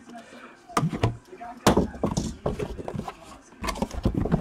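Packing tape on a cardboard box being slit with a blade and the box being handled and opened: a run of irregular sharp scrapes, taps and knocks on cardboard.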